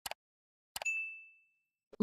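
Sound effects for a subscribe-button animation: a short mouse click, then about a second in another click followed by a single bright bell ding that rings out and fades within about half a second.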